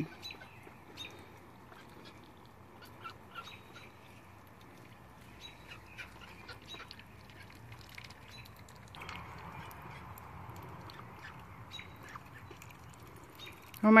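Faint scattered bird chirps and calls over quiet outdoor background, with a soft rustle about nine seconds in.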